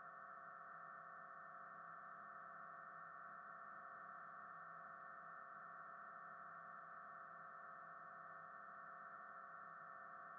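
Near silence, with a faint, steady hum made of several held tones that do not change.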